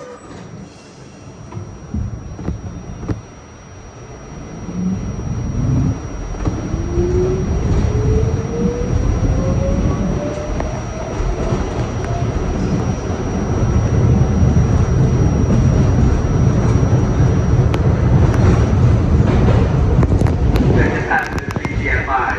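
R68-series subway train pulling out of a station and accelerating into the tunnel: the traction motors whine, rising steadily in pitch, over a growing rumble of wheels on rails.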